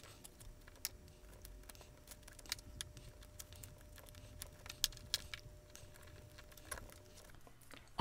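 Faint, scattered clicks and light taps of aluminium strips, a styrofoam spacer and plastic spring clamps being handled and clamped together on a tabletop, over a faint steady hum.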